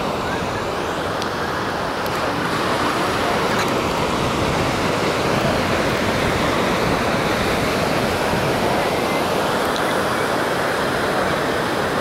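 Ocean surf breaking and washing up a sandy beach, heard as a steady, even rush with no separate crashes standing out.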